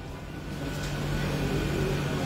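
A steady low mechanical hum over background noise, growing a little louder through the pause.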